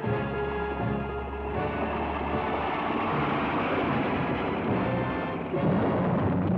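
Film score music with held chords that give way after about two seconds to a dense, noisy rumble, which grows louder near the end.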